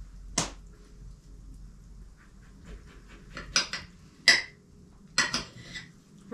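A knife clinking against a pewter plate while an orange is cut on it: a few sharp, separate clinks, the loudest a little past four seconds in.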